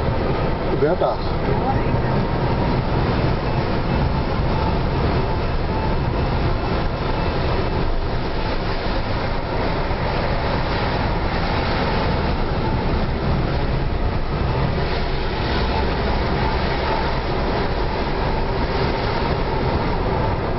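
Steady car-cabin noise from a car driving at speed: engine and tyres on wet asphalt, with no gear changes or other events standing out.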